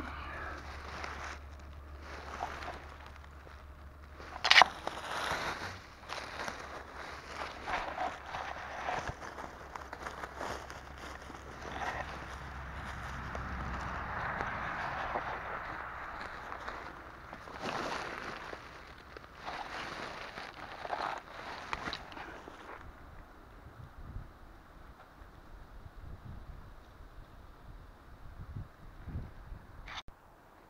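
Rustling and crunching of dry leaves and forest undergrowth as a person moves through it and handles plants, with a single sharp crack about four and a half seconds in. The rustling dies down about three-quarters of the way through.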